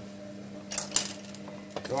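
A few sharp clinks and taps of kitchen utensils against a frying pan and a plastic blender cup, as a garlic clove goes into the pan of oil. A steady low hum runs underneath.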